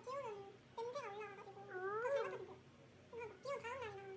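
A cat meowing repeatedly: a series of short, rising-and-falling meows, the longest and loudest about two seconds in.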